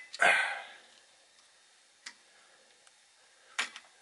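Small clicks and knocks as MOSFET transistors are worked loose from an inverter's aluminium heat sink. There is a short, louder burst of noise just after the first click, then a faint click midway and a few more clicks near the end.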